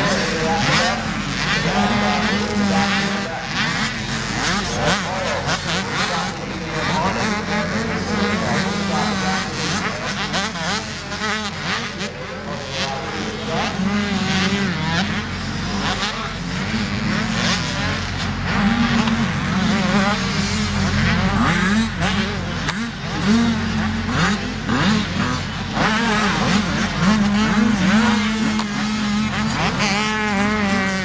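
Several motocross bike engines revving and running at once, their pitch constantly rising and falling as the bikes race on the track.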